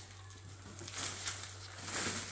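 Faint rustling and crinkling of plastic grocery packaging as bagged okra and vacuum-packed beef are lifted out of a shopping bag, over a steady low hum.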